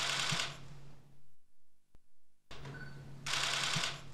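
Camera shutters firing in quick bursts, twice: once at the start and again about three seconds in, each burst lasting about half a second.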